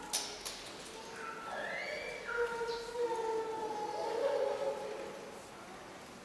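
A high-pitched voice holding and sliding between notes, loudest from about a second and a half in until about five seconds in, with a sharp click near the start.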